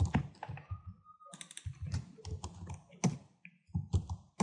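Computer keyboard typing: irregular keystrokes as code is entered, with a brief pause about a second in.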